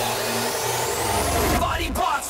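Electronic dance music in a DJ mix at a transition: a rising sweep climbs for about a second and a half over the beat, the music cuts out for a moment, and a section with vocals comes in near the end.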